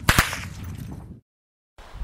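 Two sharp gunshot cracks a fraction of a second apart, followed by a fading noisy tail that cuts off to dead silence about a second in.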